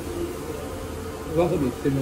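A steady buzzing hum with a constant mid-pitched tone, with brief low voice sounds a little past halfway.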